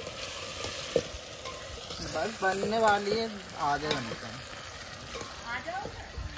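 Steel spoon stirring and scraping a spice masala frying in a steel pot over a wood fire, with a steady sizzle and a sharp knock of the spoon against the pot about a second in.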